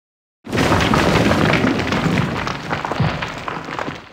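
Logo-reveal sound effect: a sudden loud boom about half a second in, followed by a crackling, rumbling blast that slowly fades.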